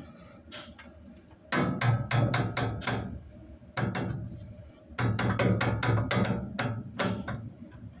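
Gas fireplace ignition and control valve working while the pilot is being lit: two bursts of rapid clicking, several a second, each over a steady low hum, starting about a second and a half in and again at about five seconds.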